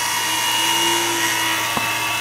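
Oil-type vacuum pump running steadily as it pulls a vacuum on a car's air-conditioning system, with one click near the end.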